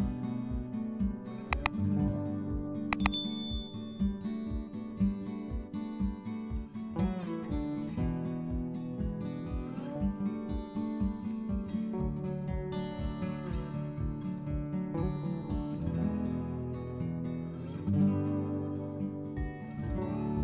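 Background music: plucked guitar over a steady beat. A short click and then a bright bell-like ding sound about two to three seconds in.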